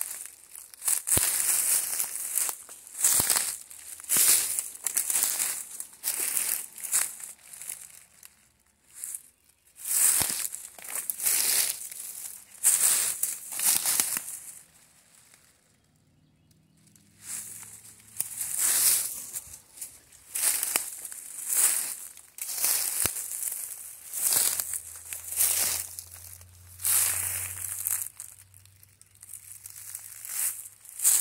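Footsteps crunching through dry leaf litter and pine needles at a walking pace, about one step a second, with two short pauses, along with brushing and rustling of undergrowth against the walker.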